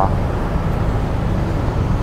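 Steady low rumble of city street traffic with a faint, even engine hum underneath.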